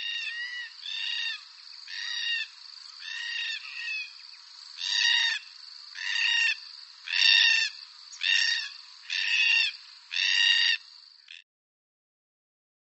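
Forest red-tailed black cockatoo (karak) calls: about ten harsh, ringing calls roughly a second apart, growing louder in the second half, over a faint steady high-pitched tone. They cut off sharply just before the end.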